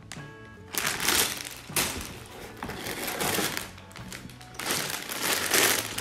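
Plastic bags full of Lego pieces crinkling and rustling in the hands in several irregular bursts, the loudest near the end, with the loose bricks shifting inside.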